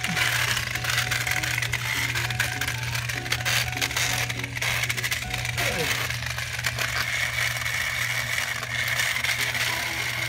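Two battery-powered TrackMaster toy engines pushing head-on against each other, their motors running with a steady high whine and their plastic gears and bodies rattling.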